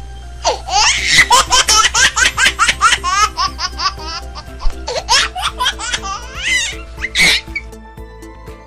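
High-pitched laughter, a quick run of giggles, starting about half a second in and ending just before the close, over steady background music.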